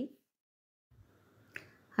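Near silence in a pause of the voice-over, broken by one brief, faint click about one and a half seconds in.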